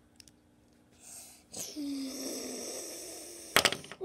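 A person making a long, breathy, hissing sound by mouth for about two seconds, with a short low voiced note near its start. It is followed by a few sharp clicks of plastic toy pieces knocking together, the loudest sound, near the end.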